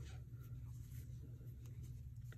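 Faint scratching and light ticks of a metal crochet hook pulling yarn through double crochet stitches, over a steady low hum.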